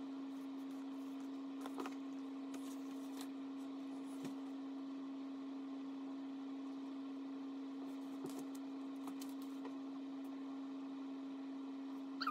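A steady hum on one unchanging tone, with a few faint small clicks.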